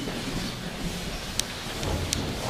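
Steady rustling background noise of a hall audience, with one sharp click about one and a half seconds in.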